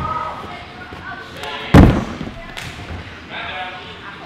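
A single heavy thud about two seconds in: a person's body landing on a padded mat after a flip. Voices talk around it.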